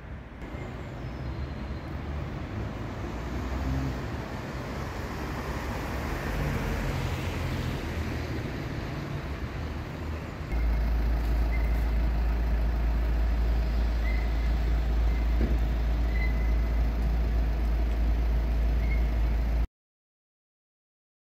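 Outdoor road traffic, swelling as a vehicle passes about a third of the way in. About halfway through a loud, steady low rumble starts abruptly and runs until the sound cuts off just before the end.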